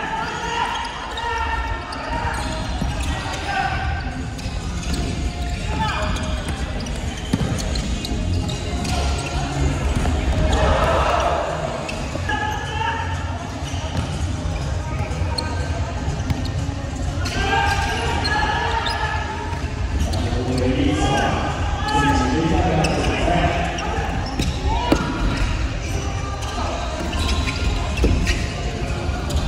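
Live sound of an indoor futsal game in a large, echoing hall: players' shouts and calls over a crowd's voices, with sharp thuds of the ball being kicked and striking the hard wooden court.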